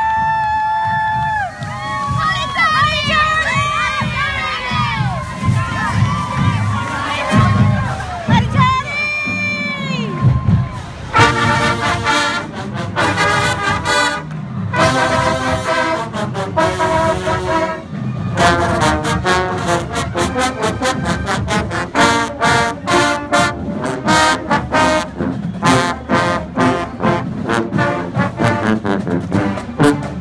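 Voices shouting and cheering for the first ten seconds or so. Then a marching band's brass section, trumpets and sousaphones, starts playing, in short punchy notes in a steady rhythm over drums.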